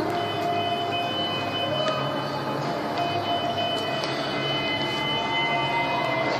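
Background music heard indistinctly, with long held tones over a steady hall hum and a constant high-pitched whine; one tone slowly rises in pitch near the end.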